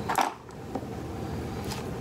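Steady low background rumble, like a fan or room noise, with a short sharp sound just after the start and a faint click a little later.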